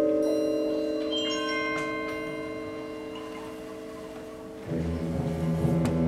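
High school symphonic concert band holding a soft sustained chord with high ringing notes over it, slowly fading. About three quarters of the way through, the full band comes in louder, with low notes added.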